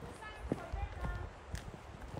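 Footsteps of people walking on a dirt trail, with two sharper steps about half a second and a second and a half in, under quiet, low voices.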